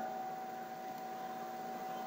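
Steady low hiss with a thin, faint steady tone underneath: the recording's background noise in a pause between spoken words.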